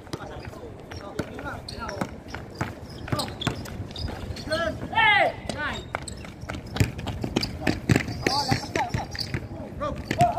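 Basketball bouncing repeatedly on a concrete court during play, with players' voices; a loud shout about five seconds in is the loudest sound.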